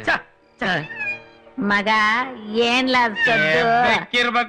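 Domestic cat meowing, mixed with a man's voice and the film's background score.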